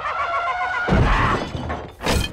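Cartoon sound effect of a heavy stone door in a rock wall bursting open: a heavy hit and crash about a second in, after a wavering tone.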